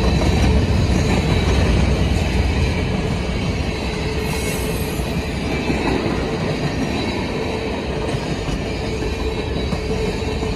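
Freight cars of a passing freight train rolling by close at hand: a steady heavy rumble of steel wheels on rail. A thin steady wheel squeal runs over it.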